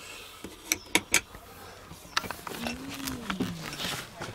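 A few light clicks and knocks of things being handled, a quick cluster about a second in and more later, with a brief low hum that rises and falls about three seconds in.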